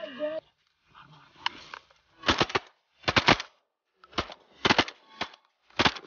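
Shotgun shots fired at ducks, a rapid string of sharp blasts in close groups of two or three, beginning about two seconds in and running on to the end.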